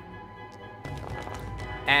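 Combat background music playing softly, with a few faint clicks as the virtual dice roll.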